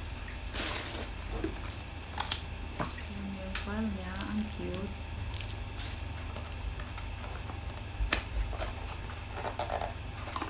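Packaging being handled: plastic bags rustling, cardboard boxes and small plastic accessories clicking and tapping inside a plastic foot-spa basin, in scattered short sounds. A brief hummed voice comes in about three seconds in, over a steady low hum.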